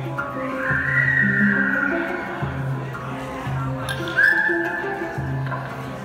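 Live hang drums playing a steady groove of low ringing notes, under a high melody line that slides up into long held tones twice.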